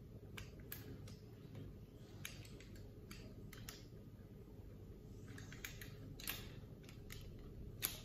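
Faint, scattered clicks and taps of an aluminium smartphone cage being handled and fitted onto a tripod head, about a dozen irregular clicks over low room hum.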